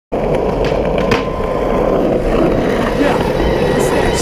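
Skateboard wheels rolling over asphalt with a steady rumble, with two sharp clacks of a board about a second in.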